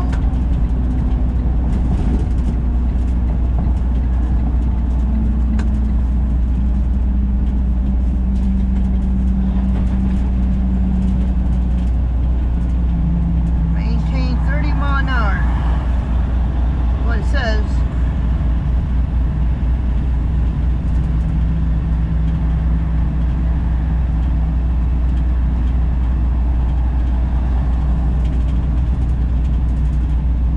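Inside the cab of a semi truck at highway speed, loaded to about 80,000 pounds: steady diesel engine and road drone with a heavy low rumble. The engine's hum shifts in pitch a few times.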